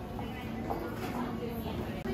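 Indistinct chatter of several voices in a busy shop, with music playing underneath.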